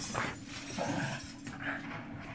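A small dog giving three short whimpering yips while playing, attacking a plush slipper.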